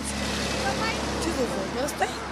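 A motor vehicle passing close by on the road, a steady rush of road noise with a low engine hum.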